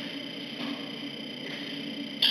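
Steady room tone: a low hum with an even hiss and no distinct events.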